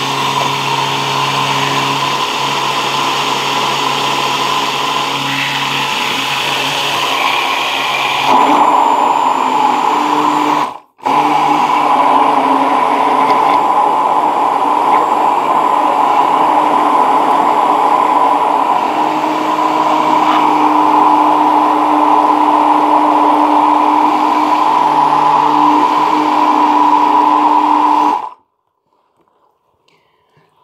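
Braun hand-held immersion blender running in its plastic beaker, blending a thin mix of dry milk powder, water and sunflower oil. Its tone shifts and grows louder about eight seconds in. It cuts out for a moment about eleven seconds in, starts again, and stops shortly before the end.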